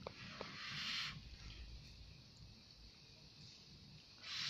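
A short puff of breath, about a second long at the start, blown onto a chopstickful of hot instant noodles to cool them, followed by faint room noise.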